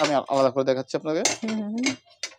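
A person talking, with light clinks of ceramic plates and cups being handled, including sharp ones a little past halfway and near the end.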